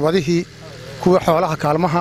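A man speaking in Somali, close to a handheld microphone, in two phrases with a short pause about half a second in.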